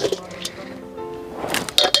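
Background music with held, steady notes, and a few quick metallic clinks near the end from chopsticks knocking on a steel bowl.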